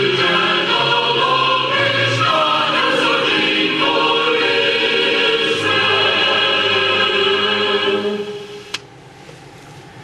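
A choir singing, many voices in sustained harmony, which fades out about eight seconds in; a single click follows, then low background noise.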